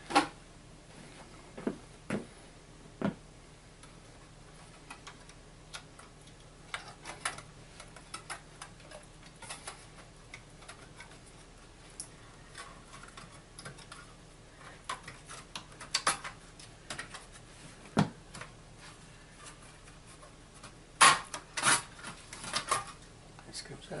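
Sharp clicks, taps and light scrapes of metal and plastic parts handled by hand as the metal shield over the memory slots of a Dell Inspiron 23 all-in-one is unclipped and lifted off. The clicks come singly and in small clusters, the loudest bunch near the end.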